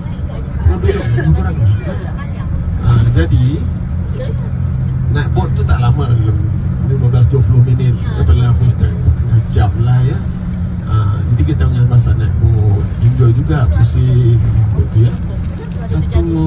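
Steady low rumble of a bus's engine and road noise, heard from inside the cabin, with indistinct talk over it.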